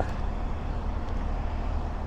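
Steady low background rumble, with no single sound standing out.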